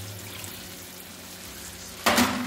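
Tomato sauce and rinse water in a hot stainless pan of sautéed vegetables, sizzling softly as a steady hiss.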